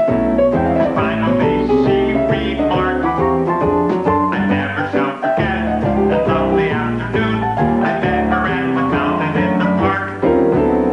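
Upbeat music playing from a jukebox, with plucked guitar to the fore and a steady beat.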